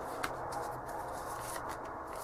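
Tarot cards handled on a cloth-covered table: a single light tap about a quarter second in as a card is set down, then soft rustling of cards as the deck is picked up.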